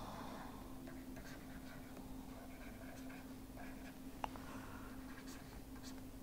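Faint scratching and tapping of a stylus writing on a pen tablet, with one sharper tick a little past four seconds in, over a steady low hum.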